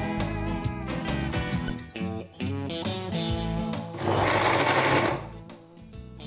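Electric mixer grinder run in one short burst of about a second, about four seconds in, mincing raw mutton pieces. Background music plays throughout.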